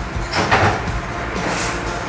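Steel scraping and sliding as a small part is handled and taken out of a machine vise, two longer scrapes about half a second and a second and a half in.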